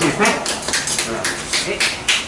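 A few people clapping their hands, irregular claps several a second, over voices.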